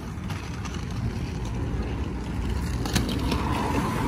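City street ambience: a steady low rumble of traffic, with a few light knocks.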